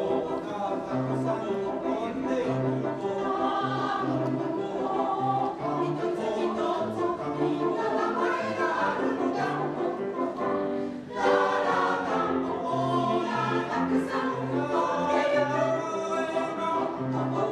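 Mixed choir of women's and men's voices singing with grand piano accompaniment, with a short break between phrases about eleven seconds in.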